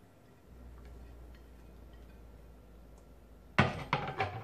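Faint handling sounds of grated cheese being pushed off a plate into a stainless steel bowl, then, near the end, a sudden loud clatter of a ceramic plate set down on a stone countertop.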